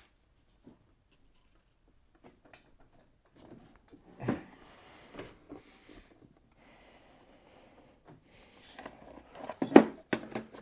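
A loaded IKEA cube shelf unit being tilted and shifted by hand onto a wheeled dolly: scattered knocks and rattles from the unit and the items on its shelves from about four seconds in, with the loudest thump near the end.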